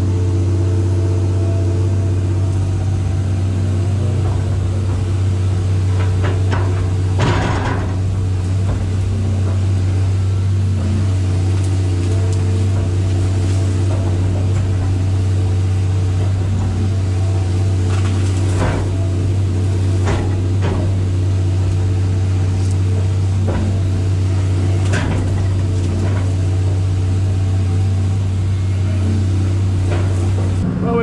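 John Deere excavator running steadily under the operator's control, heard from inside the cab: a loud, even low engine drone, with a few sharp knocks scattered through it.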